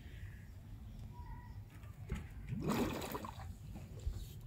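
Faint water sloshing and splashing as a scuba diver breaks the surface of harbour water, with a short louder swell of splashing a little past halfway, over a low rumble.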